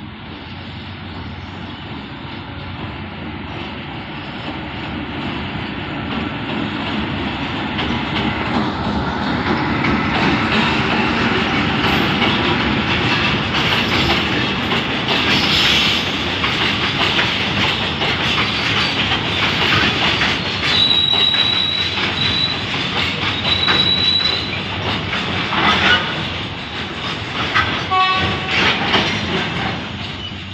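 A container freight train hauled by a CSR diesel-electric locomotive rolls past, growing louder over the first ten seconds as it approaches. Then the wagons' wheels clatter steadily over the rail joints. A high, thin wheel squeal comes and goes about two-thirds of the way in, and a brief pitched squeal follows near the end.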